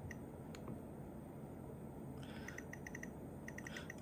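Nest Learning Thermostat clicking softly as its ring is pressed and then turned to change the set temperature: one click, then two quick runs of about five ticks each.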